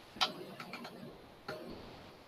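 Computer mouse clicks: one sharp click about a quarter second in, a quick run of lighter clicks, then another click about a second and a half in.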